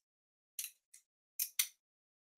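Titanium handle halves of a magnetic, balisong-style folding knife clicking as it is flipped and the magnets snap together: a few light clicks, the loudest pair close together about a second and a half in.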